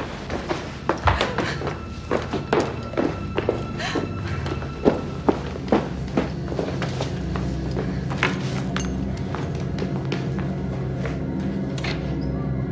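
Thuds, knocks and footsteps of two people struggling, thickest in the first half, over steady background music.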